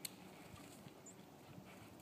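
Faint, muffled hoofbeats of a horse cantering on soft sand footing, with a sharp click just at the start and a brief high chirp about a second in.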